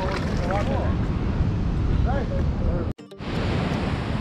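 Wind buffeting the microphone over surf at the shore, with brief faint voices. The sound cuts out abruptly about three seconds in, then the wind and surf noise comes back.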